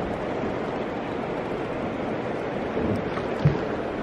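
Steady rushing noise of river current around a drifting boat, mixed with wind on the microphone.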